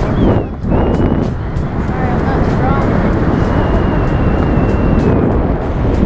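Wind rushing and buffeting over the camera microphone during a tandem skydive, with a thin high whistle in the middle.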